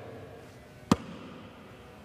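A basketball bounces once on a gym floor, a single sharp thump about a second in, over quiet room tone.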